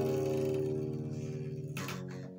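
Acoustic guitar: a strummed chord left ringing and slowly fading, then strummed again near the end.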